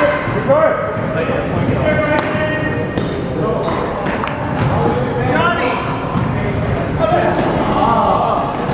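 Basketball bouncing on a gym floor during a game: scattered sharp knocks of the ball among the overlapping voices of players and spectators calling out.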